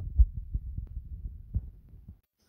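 Handling noise on a phone's built-in microphone: irregular low thumps and rumble as fingers tap and swipe the screen, the sharpest thump about a quarter second in, fading near the end.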